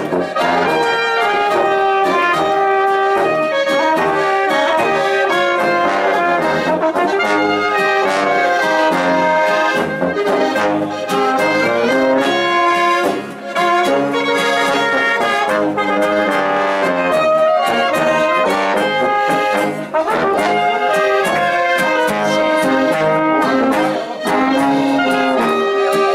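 Brass band music with a steady beat, played continuously with short breaks between phrases.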